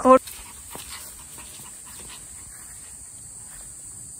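Steady high-pitched insect chirring in the background, with a few faint soft rustles. A woman's brief exclamation and laugh come right at the start.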